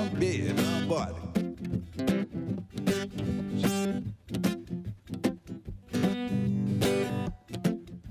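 Acoustic guitar strummed in a steady rhythm, chord after chord.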